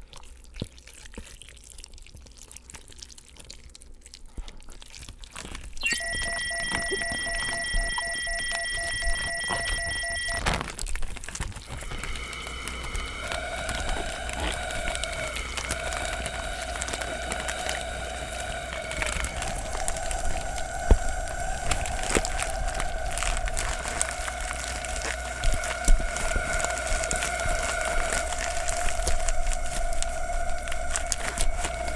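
Electronic soundtrack tones. Faint crackling at first; about six seconds in, a steady high tone that cuts off with a click about four seconds later. Then a held, lower, slightly wavering tone sets in, breaks off briefly twice and carries on.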